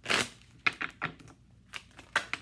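Tarot deck being shuffled by hand: a short rush of cards riffling together at the start, then a few sharp clicks and snaps of cards knocking against each other.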